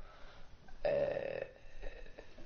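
A man's short, throaty vocal sound, about a second in and lasting about half a second, like a burp or a drawn-out 'ehh'.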